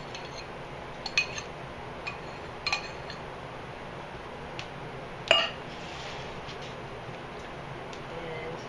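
Glass and stainless steel kitchenware clinking as a bowl and spoon are handled at a mixing bowl: a few scattered sharp clinks, the loudest about five seconds in, over a steady background hiss.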